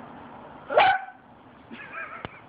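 Boston Terrier barking once, loud and short, about a second in, with a fainter second call near the end.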